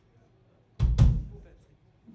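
Two loud drum-kit hits in quick succession about a second in, each a deep thump with a bright top, ringing out within about half a second.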